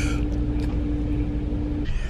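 Steady low rumble inside a car's cabin with a constant humming tone over it; the hum stops abruptly near the end.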